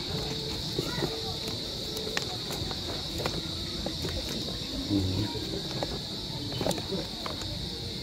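Crickets trilling steadily at a high pitch, with a few faint clicks and a brief low murmur of a voice about five seconds in.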